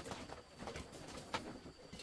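Wood fire crackling, with a few sharp pops, while a bird coos faintly in the background.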